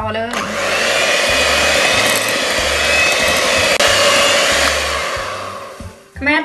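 Electric hand mixer with twin wire beaters running in a glass bowl, beating butter, sugar, egg and condensed milk into a cream. The motor runs steadily with a thin whine, starting about a third of a second in and dying away near the end.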